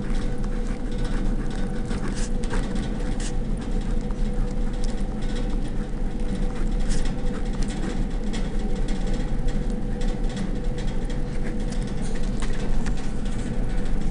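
Marker pen scratching on paper in short strokes as words are written, over a steady low background hum.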